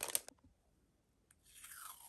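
Plastic stencil in its packaging sleeve crinkling briefly as it is handled, then near the end a short scraping rip that falls in pitch as tape is pulled off the roll.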